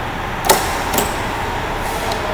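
Sharp click, then a lighter click about half a second later, from the key switch and solenoid of a bench-mounted heavy-duty starter test rig as the key is turned. A steady shop hum runs underneath.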